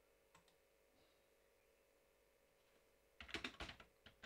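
Computer keyboard typing: one faint keystroke about a third of a second in, then near silence, then a quick run of several keystrokes near the end.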